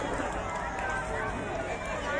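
A crowd of young children's voices chattering and calling out all at once, a steady overlapping din.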